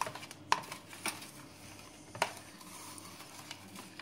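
A utensil stirring and scraping half-frozen ice cream mixture in a plastic container, with three sharp clicks of the utensil against the container in the first couple of seconds.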